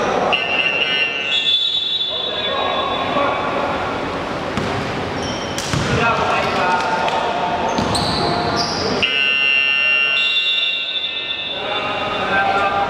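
A basketball bouncing on a wooden hall floor during play, with players calling out. High squeaks come near the start and again about nine seconds in.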